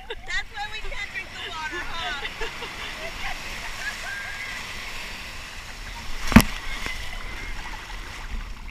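Shallow ocean surf sloshing and churning around a camera held at the waterline, with voices in the first few seconds. A single sharp knock about six and a half seconds in, the loudest moment.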